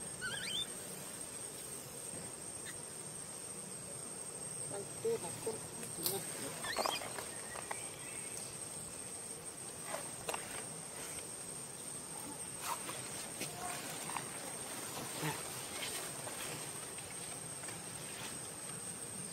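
Steady high-pitched chirring of crickets, with a few short high squeaks from an infant macaque near the start and about seven seconds in, and light scattered rustles and clicks in the dry leaf litter.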